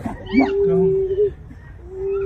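A person's voice giving a long, held cry on one pitch: it rises sharply about a third of a second in, holds for about a second, then breaks off.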